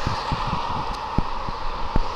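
Steady road traffic noise from cars passing on the adjacent road, with a few soft low thumps.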